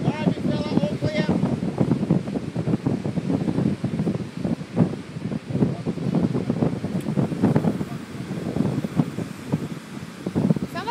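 Gusty wind noise buffeting the microphone, with a voice heard briefly in the first second.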